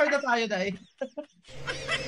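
A person laughing in short cackling bursts, trailing off after less than a second; about one and a half seconds in, a steady background sound starts.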